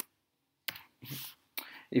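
A few separate keystrokes on a computer keyboard, slow and spaced out, as a line of code is typed.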